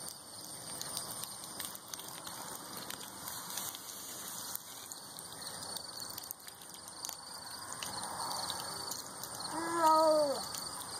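Water from a garden hose pattering and splashing on concrete. Near the end comes a short call that falls in pitch.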